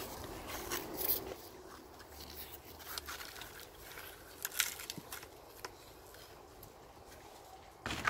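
Mostly quiet, with a few faint scrapes and light knocks from soil mix and a plastic garden sieve being handled in a metal wheelbarrow; the loudest knock comes a little past the middle.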